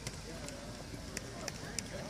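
Distant shouting from youth football players and the sideline as a play runs, with a few sharp clicks.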